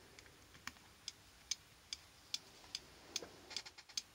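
A small 24 V relay clicking on and off in self-oscillation, driven through a series resistor and capacitor, faint and regular at about two and a half clicks a second. A few extra clicks crowd in near the end.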